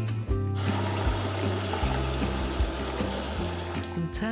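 Kitchen tap running a stream of water into a pot of sweet potatoes, starting about half a second in and stopping just before the end, under background music.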